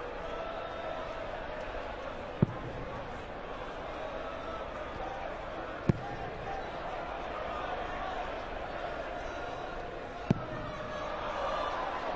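Three steel-tip darts striking a bristle dartboard one after another, a few seconds apart, in a throw at double 10, over the steady murmur of an arena crowd.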